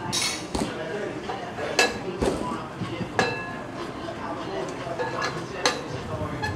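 Gym weights clanking: several sharp metallic clinks and knocks, some with a brief ringing tone, at irregular intervals, with the loudest near the end.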